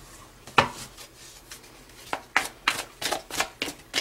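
A deck of Romance Angels oracle cards being shuffled by hand: one sharp slap about half a second in, then a quick run of card snaps and slaps through the second half.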